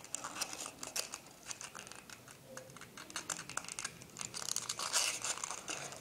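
Folded paper pieces being handled and slotted together into a cube, giving light, irregular rustling and crinkling that grows a little louder near the end.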